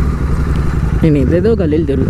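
Motorcycle engine running steadily at low road speed, a constant low rumble heard from the rider's seat, with a voice over it from about a second in.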